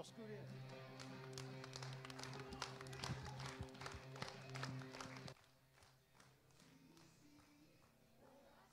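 A faint, steady low note held on a keyboard, with a scatter of short taps and clicks over it, cutting off sharply about five seconds in; after that only faint scraps of tone remain.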